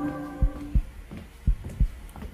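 Heartbeat sound effect from a TV music cue: deep double thumps, lub-dub, about once a second. Under it a held ambient chord fades out about half a second in.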